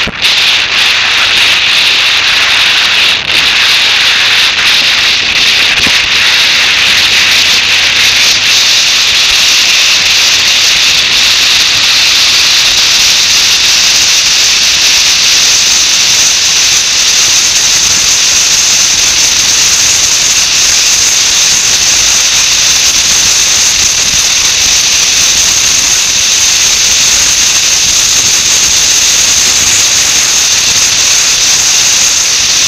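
Loud, steady wind rush and hiss over the microphone of a camera mounted on a moving motorcycle, drowning out the engine. The hiss grows brighter over the first fifteen seconds or so as the bike picks up speed out of a junction onto an open road.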